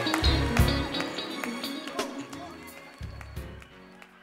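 Closing bars of a gospel mass choir song, voices and band fading out steadily as the track ends.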